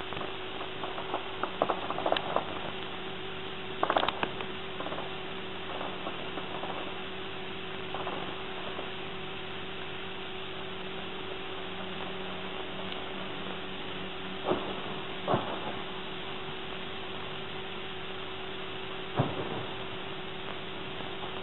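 Steady hiss and hum of an old camcorder recording, broken by a few short clicks: a cluster about four seconds in and single ones later.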